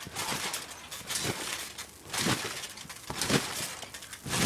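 People bouncing on a backyard trampoline: the mat and springs sound with each bounce, four bounces about a second apart.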